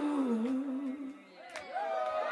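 Background music vocals: a single held vocal note, wavering in pitch, fades out about a second in. After a short lull there is a click, and several voices gliding in pitch come in near the end.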